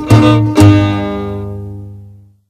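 The closing chords of a string-band song: two strummed guitar chords about half a second apart that ring out and fade away as the music ends.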